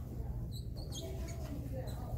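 Dry-erase marker squeaking against a whiteboard as it writes: several short high squeaks about half a second to a second in, and another near the end, over a steady low room hum.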